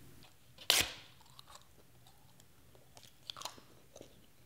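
A man chewing a paper playing card: one loud sharp bite about a second in, then faint, scattered chewing clicks.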